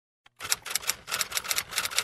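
Typewriter sound effect: a rapid run of clacking keystrokes, several a second, starting about half a second in.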